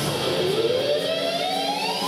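Rock instrumental music: an electric guitar holds one long note that slides slowly up in pitch and levels off near the end.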